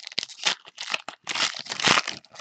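Foil trading-card pack being torn open and crinkled by hand: a quick, irregular run of crinkles and rips, loudest near the end.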